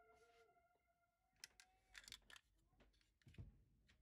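Near silence, broken by a few faint clicks of hard plastic toy parts being handled.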